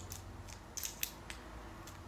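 Faint, light clicks and taps, about six spread irregularly over two seconds, the two loudest close together near the middle, over a low steady hum.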